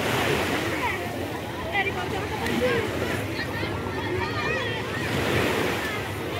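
Shallow sea water lapping and washing around people standing in it, with wind on the microphone and scattered voices of bathers over it.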